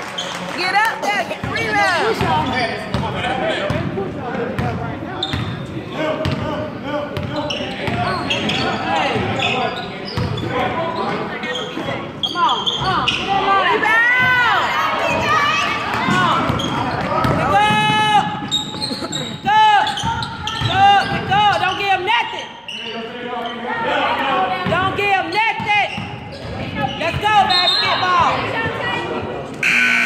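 Basketball game on a hardwood gym floor: the ball bouncing and sneakers squeaking as players run the court, with players' voices calling out, all echoing in the gym. The squeaks come thickest in the middle of the stretch.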